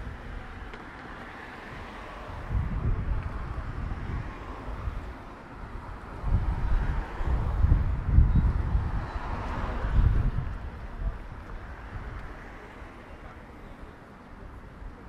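Wind buffeting the microphone in irregular gusts, strongest in the middle of the stretch, over a steady hum of street traffic.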